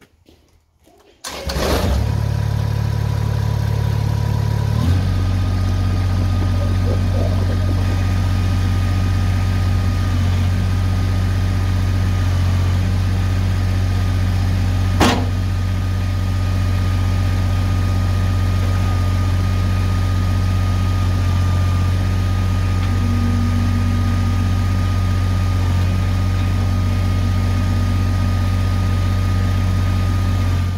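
Kubota BX2660 compact tractor's three-cylinder diesel running steadily, coming in suddenly about a second in, with a steady high whine over it as the hydraulic top link swings the box blade. A single sharp click about halfway.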